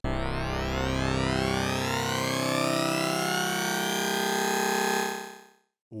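Padshop 2 granular-oscillator synth note holding a steady pitch while its formant is swept upward, so the tone's resonant colour climbs without the pitch changing. The note fades out near the end.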